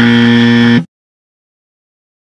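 A loud wrong-answer buzzer sound effect: one flat, steady buzz of just under a second that cuts off abruptly, marking a mistake.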